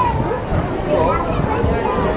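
Crowd of adults and children chattering, many voices overlapping with no single one standing out.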